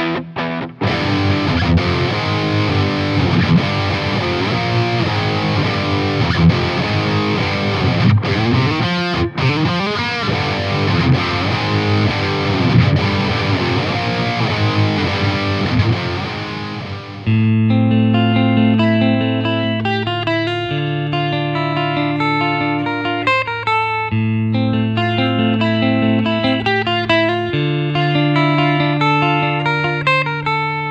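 Electric guitar playing a demo through an amp, most likely the Tom Anderson Drop Top: a heavily distorted, thick tone for about the first seventeen seconds, then a sudden switch to a clean tone playing separate picked notes over steady low notes.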